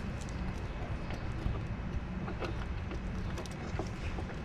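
Faint, scattered light clicks and taps of a small metal bracket and screw being fitted onto an RC servo by hand, over a low steady rumble.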